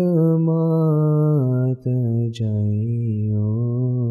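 A man chanting an Ismaili ginan (devotional hymn) unaccompanied, drawing out long held notes on a single syllable. The pitch steps down about a second and a half in, and there are two brief breaks for breath near the middle.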